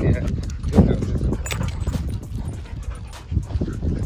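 Dogs play-fighting: short growls and vocal bursts among scuffling, with many small clicks and rustles and a low rumble throughout.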